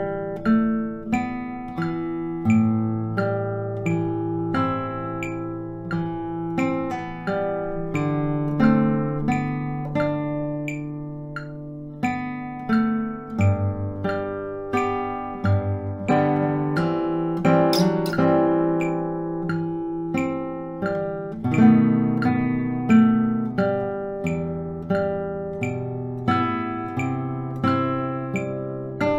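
Nylon-string classical guitar played fingerstyle at a slow tempo: single plucked melody notes over held bass notes, about two notes a second, each left to ring.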